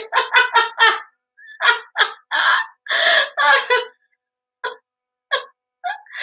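A woman laughing hard: a quick string of laughs, then longer breathy peals, tailing off into two short gasping laughs near the end.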